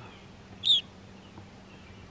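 Evening grosbeak giving one short, high call about two-thirds of a second in.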